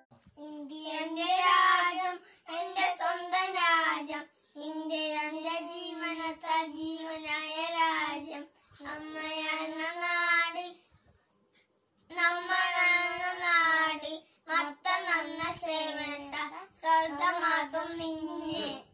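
Two young boys singing a patriotic song together with no accompaniment, in sung phrases of a few seconds, with a pause of about a second just past halfway.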